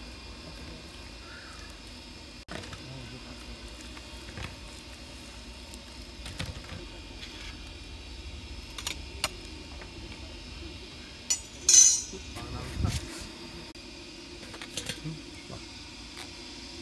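Food-handling noises at a stainless-steel bowl on a stone slab: scattered light clinks and knocks of the metal bowl as goat legs are lifted and turned in wet masala paste. The loudest is a short sharp clatter about twelve seconds in, followed by a low thump.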